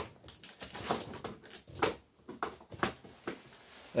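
Light, irregular clicks and rustles of handling as a clock radio's power cord is plugged into a wall outlet.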